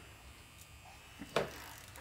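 Faint steady electrical hum and buzz in a small room, with one short click about a second and a half in.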